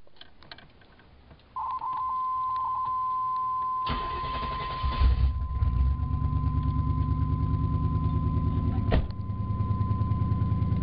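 A car engine is cranked by the starter for about a second and catches, then settles into a rhythmic idle. A steady high-pitched warning tone sounds from early on and continues over the idle, and there is one sharp click near the end.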